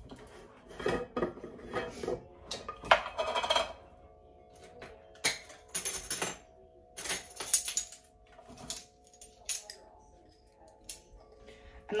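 Metal measuring spoons and utensils clinking and knocking against a glass jar and a mixing bowl in a string of short, sharp clicks while dry ingredients are measured out.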